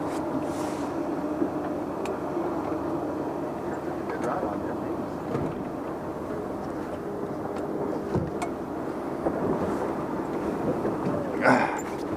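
A boat's engine running steadily under the fishing, an even low hum.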